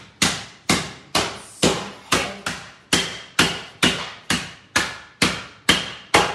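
Rolling pin pounding a foil-wrapped bar of dark chocolate on a granite countertop, in steady blows about two a second, breaking the chocolate into small pieces.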